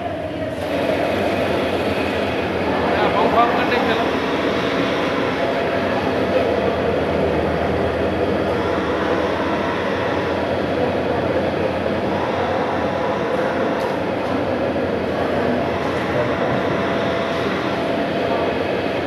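Belt-driven hammer mill pulverizer running with a loud, steady mechanical drone, getting louder about a second in.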